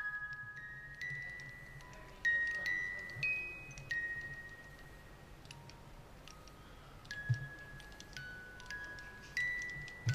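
A small music box movement, its pinned cylinder plucking the tuned steel comb, plays a slow tune of single ringing notes. The notes come unevenly, with a longer pause in the middle.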